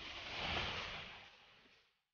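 A single whoosh of rushing noise that swells up, peaks about half a second in and fades away by the end.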